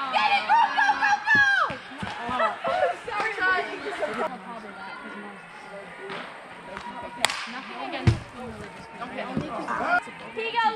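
People shouting and calling out, loudest in the first four seconds and quieter after. About seven seconds in there is a single sharp crack, and a low thud follows a second later.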